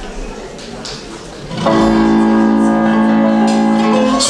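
Recorded instrumental backing track of a pop song starting about a second and a half in, coming in loud with a held chord of several steady tones, after a quieter stretch of room sound.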